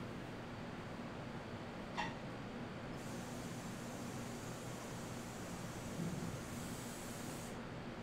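Steady room hum, with a sharp click about two seconds in and a high hiss that starts about a second later and stops suddenly near the end.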